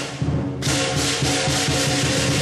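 Lion dance percussion: a big drum with clashing cymbals and a gong. The cymbals ease off briefly, then crash back in about half a second in and keep up a steady beat.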